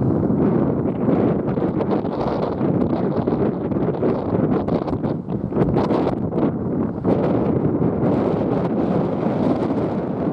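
Wind buffeting the camera microphone: a steady, fluttering low rush of noise.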